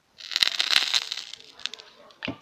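Cooking oil sizzling and crackling as it hits a very hot, empty cast-iron kazan. It starts suddenly a moment in and dies down over about a second and a half, with a few sharp crackles.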